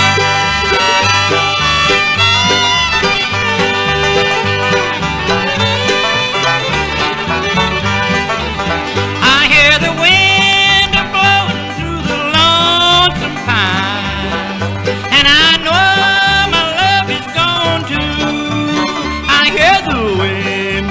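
Instrumental intro of a bluegrass record: banjo, guitar and fiddle over a steady beat. From about halfway through, the fiddle repeatedly slides up and down in pitch.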